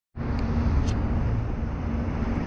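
Steady rumble of distant city traffic heard from high up, with a constant low hum running under it.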